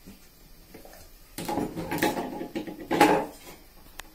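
Kitchen utensils being handled on a table: about two seconds of clattering knocks and scrapes from steel vessels and a spoon, with the loudest knock about three seconds in.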